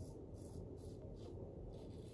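Faint scraping of a 1930s Barbasol safety razor with a Feather blade cutting lathered stubble, in a few short strokes.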